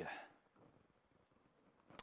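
Near silence: room tone in a pause between spoken phrases, with the end of a man's voice fading out at the very start.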